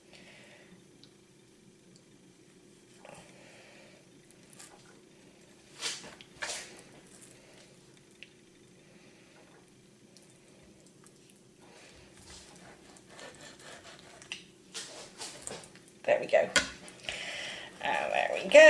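Chef's knife skinning a raw salmon fillet on a chopping board: quiet scrapes and wet squelches of the blade working between skin and flesh, with a couple of sharp clicks about six seconds in and louder scraping near the end.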